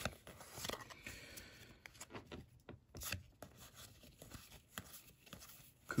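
Faint papery swishes and light clicks of Pokémon trading cards being slid and flipped through the hands.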